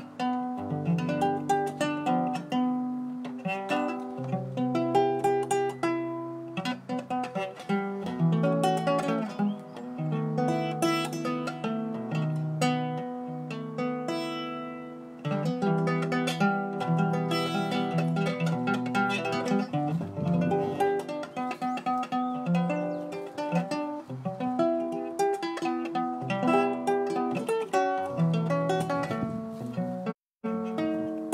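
Guitar music: plucked guitar notes and chords played in a steady rhythmic pattern, with no vocals. There is a brief break about halfway through.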